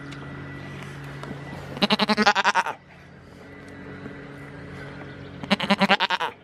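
A goat bleating twice, each call about a second long with a rapid quaver, the second one near the end.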